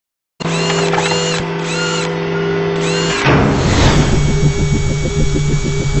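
Synthesized intro sting for a logo animation: a steady hum under a run of arching electronic sweeps, changing a few seconds in to a fast, even pulsing whir like a machine spinning up. A man's voice-over starts right at the end.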